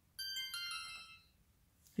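Xiaomi Yi 4K+ action camera's power-off chime, a short electronic jingle of two tones lasting about a second, as its button is pressed and the screen goes dark.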